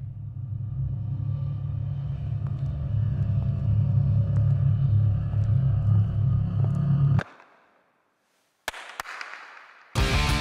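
A low, steady rumble that slowly grows louder and cuts off abruptly about seven seconds in. After a moment of silence comes a sharp bang, then a quick second crack, and a noisy tail that fades away.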